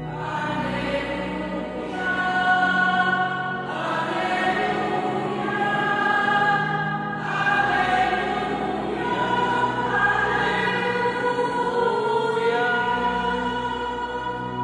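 A church choir singing a hymn in long held phrases with keyboard accompaniment; the voices come in at the start.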